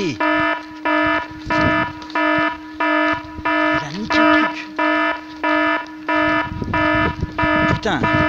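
Electronic alarm beeping in a steady loop, about three beeps every two seconds, each beep a stack of high tones, over a constant lower tone.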